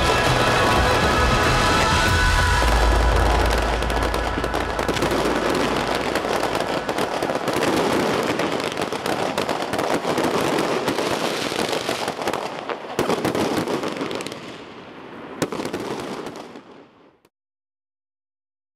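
Fireworks crackling and popping over music, with a deep boom about two seconds in and a couple of sharp bangs near the end, the whole fading out to silence.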